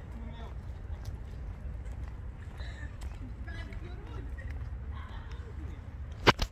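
Outdoor ambience: a low, steady rumble with faint voices in the background and a few light ticks.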